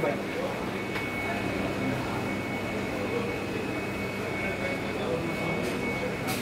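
Steady hum and whir of machinery, with a thin high whine running through it.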